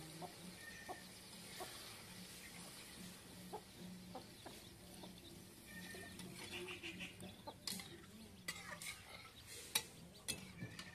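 Hens clucking softly, with a metal spatula stirring and scraping in a wok of curry and a few sharp knocks of the spatula against the pan in the last few seconds.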